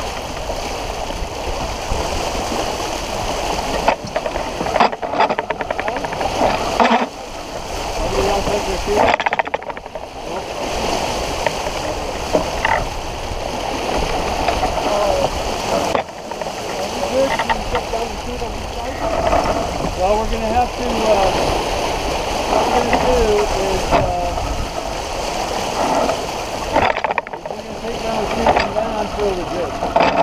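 Water rushing and splashing along a sailboat's hull under way, mixed with gusty wind noise on the microphone. Indistinct crew voices come through at times.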